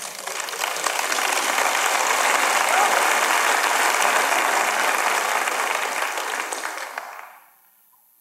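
Audience applauding in a hall. The applause swells during the first second, holds steady, and dies away about seven seconds in.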